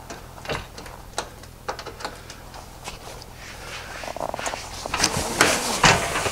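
Steel cargo enclosure divider being unlatched and folded down, giving scattered clicks and light knocks of metal parts. The handling turns into denser, louder rattles and clunks near the end as the divider comes down.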